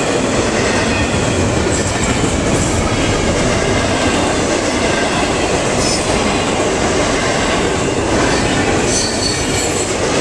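Intermodal freight train's loaded container well cars rolling past at speed: a loud, steady rush and rumble of steel wheels on rail. A few brief high-pitched wheel squeals come through about two, six and nine seconds in.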